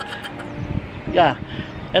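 A man speaking briefly in short bursts, over steady low outdoor background noise.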